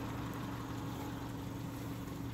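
A running engine humming steadily at a constant pitch.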